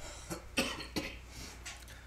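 A person coughing quietly: a few short, rough bursts about a second apart.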